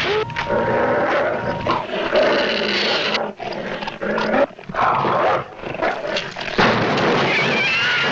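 Dogs snarling and growling on a film soundtrack, a dense, loud mix broken by several sudden cuts.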